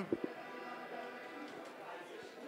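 Quiet pause: faint, steady background music under room tone, with a brief tail of a man's voice at the very start.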